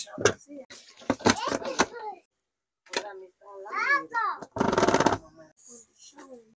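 A toddler's voice babbling and calling out, with adult voice sounds, and a short, rapid buzzing rattle about five seconds in that is the loudest sound.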